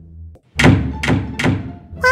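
Several heavy thuds in quick succession, starting about half a second in, each ringing out briefly, over faint background music.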